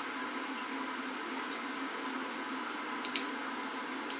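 Steady indoor room tone with a faint hum, broken by a brief click about three seconds in.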